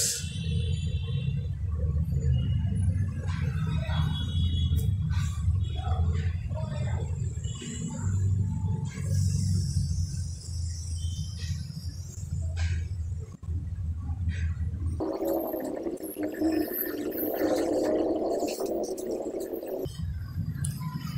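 A steady low hum, with scattered light taps and rustles from cardboard matchboxes being handled and pressed together. About fifteen seconds in, the hum gives way to a higher, rougher noise that lasts to the end.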